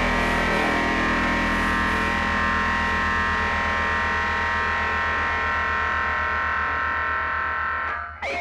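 Live rock band holding a distorted chord on electric guitars and bass, with a fast, even pulse underneath. The chord sustains and its top end slowly dies away, the end of a song.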